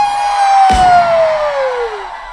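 One long whoop of cheering from a single high voice, held and sliding steadily down in pitch, with a short thud about two-thirds of a second in.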